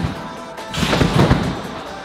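Background music plays throughout. A thud comes right at the start as the gymnast rebounds off the trampoline bed, and about a second in there is a short noisy burst as he lands in the foam-block pit.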